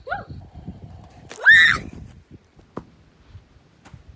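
A boy's short vocal sound, then a loud, rising scream about a second and a half in as he flees a pretend grenade, followed by a single click.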